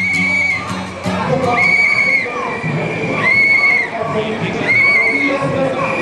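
Crowd of street demonstrators with mixed shouting voices. Short, shrill whistle blasts cut through the crowd about every one and a half seconds, half a second each.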